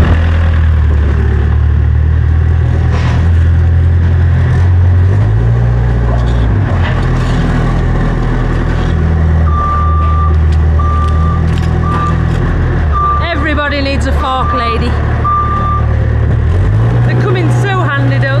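Diesel engines of a tractor and a yellow loader running, the engine note rising and falling several times. From about halfway through, a reversing alarm beeps six times at uneven gaps.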